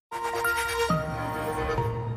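Short TV channel ident jingle: a chord of sustained musical notes that starts just after a brief silence and shifts to new notes about a second in.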